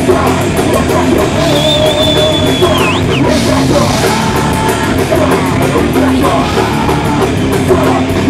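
Metal band playing live, with distorted guitars, bass and drums. A thin, high held note sounds over the band from about one and a half seconds in and bends down and back up near three seconds.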